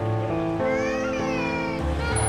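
Background music with held chords and a low bass pulse. Over it, from about half a second in, a small child's drawn-out, high wailing cry rises and then falls for about a second.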